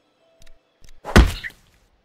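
Cartoon impact sound effect: a single loud thud about a second in, preceded by a couple of faint clicks.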